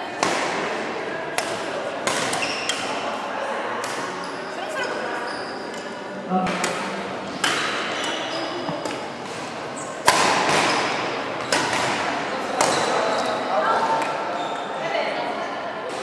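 Badminton rackets striking shuttlecocks in rallies: sharp, irregular strikes every second or so, echoing in a large hall, with the loudest about ten seconds in.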